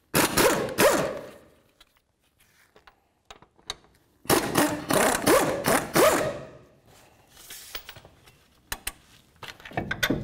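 Half-inch air impact gun spinning out the brake caliper's two mounting bolts, in two bursts of about two seconds each, about four seconds apart. A few light metallic clicks near the end.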